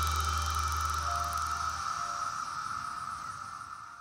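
A steady chorus of periodical cicadas, a continuous hum that slowly fades out, under a low held music note in the first two seconds.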